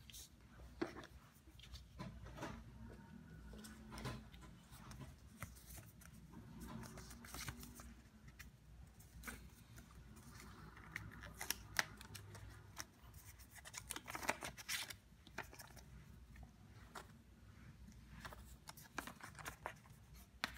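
Paper envelopes and photocards handled by hand: soft rustling with many short clicks and taps as the cards are lifted, slid out and laid down, busiest about halfway through.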